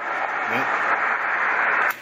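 Steady hiss of HF band noise from a shortwave transceiver's speaker, heard through the narrow single-sideband audio filter, with no clear voice in it: the 10-metre signal has faded out as propagation drops. The hiss cuts off abruptly near the end.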